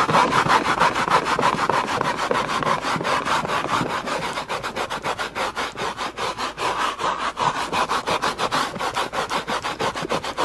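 Plastic bristle brush head of a Woolite Insta Clean carpet stain-remover bottle scrubbing back and forth on shaggy carpet, working the cleaner into a stain. Rapid, even rasping strokes, about four or five a second.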